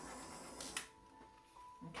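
Handheld butane torch hissing, then shut off with a sharp click just under a second in.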